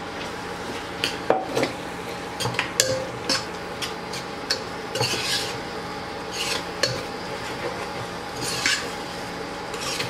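A metal spoon stirring a wet prawn mixture in a pressure cooker, with irregular clinks and scrapes against the pot, over a steady low hum.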